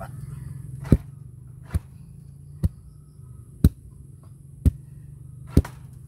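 Homemade wooden tamper, a heavy log on a wooden handle, pounding rain-dampened soil in a footing trench to compact it: six thuds at about one a second.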